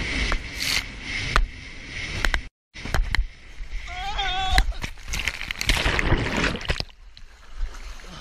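Jet ski running fast over choppy sea, with spray splashing against the hull and wind buffeting the microphone. The sound drops out briefly about two and a half seconds in, and turns quieter and more watery near the end.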